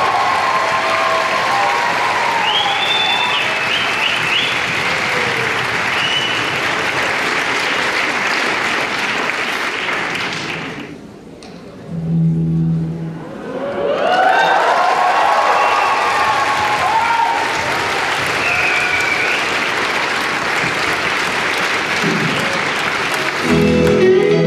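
Audience applauding and cheering, with whoops in the crowd; the applause dies down briefly about halfway, a short low note sounds, and the clapping picks up again. Near the end an electric guitar starts playing.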